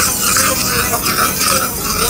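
Immersion blender running in a stainless steel saucepan, puréeing cooked purple potato chunks into a soup.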